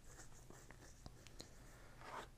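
Near silence: room tone, with a few faint small ticks.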